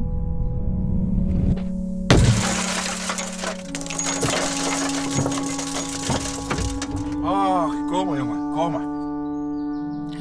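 A car window being smashed about two seconds in: one sharp crash, then a second or so of glass crumbling and falling, over background music.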